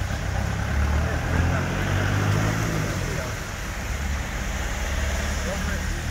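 Street traffic: a truck's engine passing with a low rumble that swells over the first two seconds and eases off, over steady tyre hiss from the wet road.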